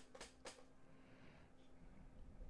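Near silence: room tone with a faint steady hum, and three faint computer-mouse clicks in the first half second.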